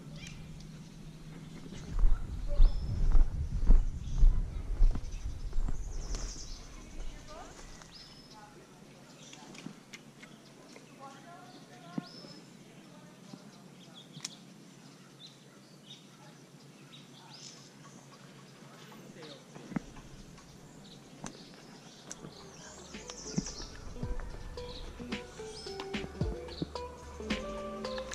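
Outdoor ambience with scattered short, high bird chirps. About two seconds in, a few seconds of low rumbling bumps on the microphone; music comes in near the end.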